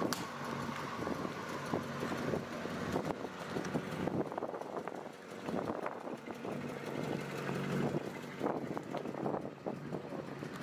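Cadillac Eldorado convertible's V8 engine running at low speed as the car rolls along, a steady low hum, with wind noise crackling on the microphone.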